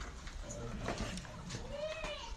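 Near the end, a drawn-out voice-like call that rises and then falls in pitch, over scattered small clicks.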